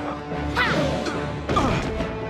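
Dramatic cartoon fight score with a crash sound effect about a second and a half in, as a thrown body hits the ground.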